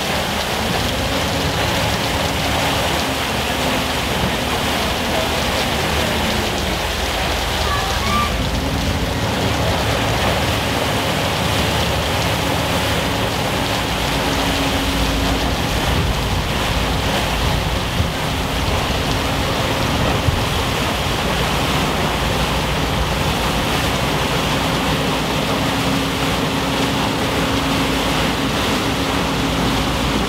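River hotel ship moving slowly through a lock chamber, its bow pushing broken pack ice: a steady rushing noise with a low engine hum that comes and goes, and a couple of short knocks about two-thirds of the way in.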